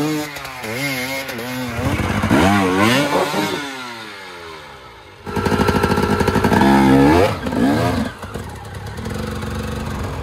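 Enduro dirt bike engines revving hard in bursts on steep climbs, the pitch rising and falling with the throttle. About four seconds in, one engine's pitch sweeps down and fades. Just after five seconds a louder engine cuts in suddenly and keeps revving.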